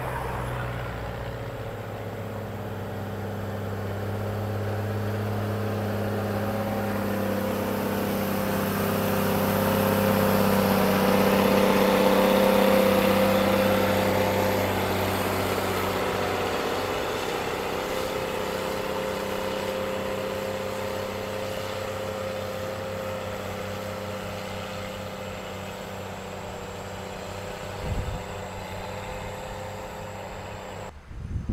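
Diesel engine of a motor grader running steadily under load as it grades soil, loudest a little under halfway through and then fading as the machine moves away. A short thump near the end.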